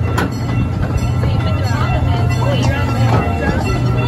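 Miniature amusement-park train running, heard from on board: a steady low drone with a few sharp clicks from the wheels and track.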